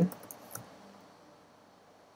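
A few faint computer keyboard keystrokes within the first second, as code is typed, then near silence.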